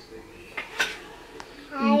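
Three light clicks or clinks of small hard objects, then a woman starts to laugh near the end.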